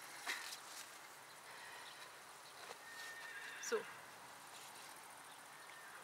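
Quiet outdoor background with faint rustling of red currant bush branches and a few light clicks as the picker straightens up from the bush, and one short spoken word about halfway through.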